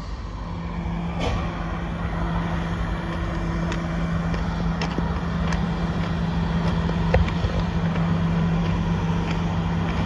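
A steady low mechanical hum, like a running engine or machinery, holding an even pitch and growing slightly louder, under a rushing background noise with a few scattered sharp clicks.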